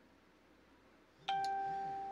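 A single chime about a second in: one clear ringing tone that starts sharply and fades slowly.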